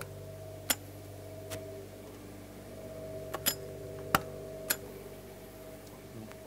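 Sharp metallic clicks and ticks from the motorhome's storage compartment door latches and hardware being handled, about six of them at irregular intervals, over a steady low hum.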